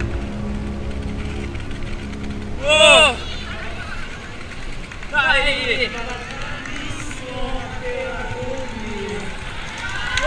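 Quiet background music under a couple of short shouted voices, about three and five seconds in, followed by faint talk.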